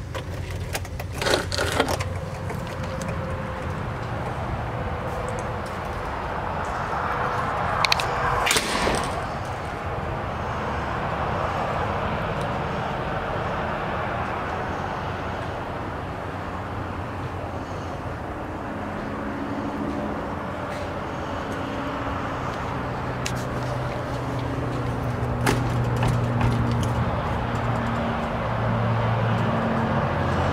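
A metal door's knob turning with clicks as the door opens, a sharp knock about nine seconds in, then footsteps over a steady background hum of distant road traffic that grows a little in the second half.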